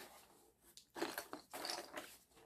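Cardboard box of Smurf Lock Blocks plastic building pieces being opened and handled, with the pieces rattling and clicking inside in short bursts about a second in.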